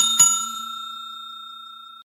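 Notification-bell sound effect: a small bell struck twice in quick succession, then one clear ringing tone that fades slowly and is cut off near the end.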